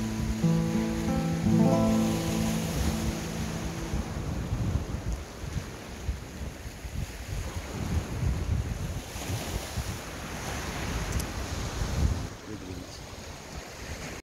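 A classical guitar's closing chords ring out and fade over the first three seconds. Then sea surf washes against a rocky shore, with wind gusting on the microphone.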